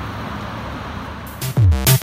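Steady noise of road traffic passing on a city street, then about one and a half seconds in, loud electronic music cuts in with deep bass drum hits that drop in pitch.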